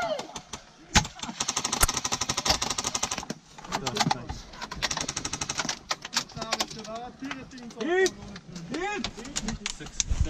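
Airsoft guns firing on full auto: a rapid clatter of shots for a couple of seconds starting about a second in, then scattered shots and shorter bursts, with players shouting over the second half.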